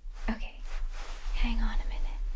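A woman whispering softly, a few short whispered words.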